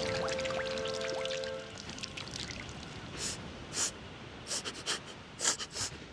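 Soft music with held notes fades out over the first two seconds. In the second half a cartoon dinosaur sniffs the air in a run of short sniffs, about six, at uneven spacing.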